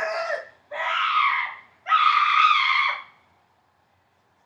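A child screaming in play: three long, high-pitched screams about a second each, the last the loudest.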